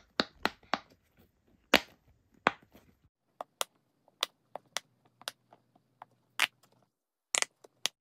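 Silicone pop-it fidget bubbles being pressed in and out: a series of sharp, crisp pops at an irregular pace, some in quick pairs.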